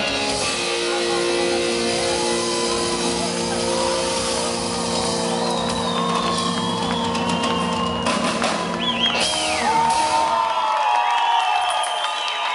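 Live pop band ending a song on a long held chord, which stops about ten seconds in, leaving the audience shouting and cheering.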